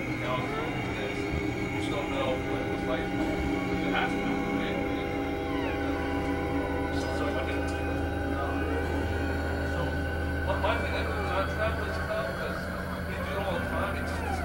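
Experimental synthesizer drone music: many sustained tones layered over a steady low hum, with occasional sliding pitches and faint clicks.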